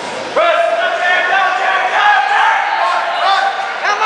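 Raised voices yelling loudly and continuously from about half a second in, briefly breaking just before the end, typical of spectators shouting encouragement at a lifter during a bench press attempt.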